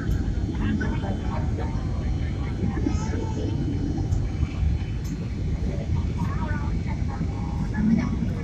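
Steady rumble of a Boeing 767 airliner cabin on approach, the engine and airflow noise heard from a window seat, with faint voices over it.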